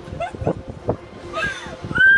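Riders on a swinging pirate-ship fairground ride giving several short, high squeals that rise and fall in pitch as the boat swings, with a couple of knocks from the ride.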